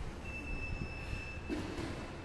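A single high, steady squeak lasting about a second, over a constant low rumble, with a short rustle near the end.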